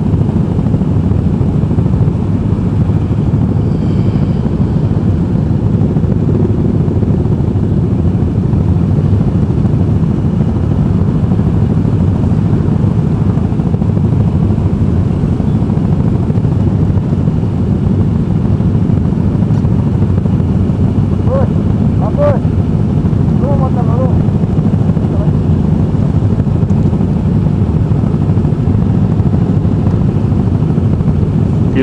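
Motorcycle engines idling in a stopped pack of sport bikes: a steady, loud low rumble. About two-thirds of the way through, a few faint short rising tones sit above it.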